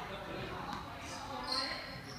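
Balls thudding and slapping as they are caught and dropped in a sports hall, with indistinct voices underneath.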